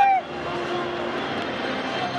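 A loud, held shout ends just after the start. It is followed by a steady background din with a faint low hum.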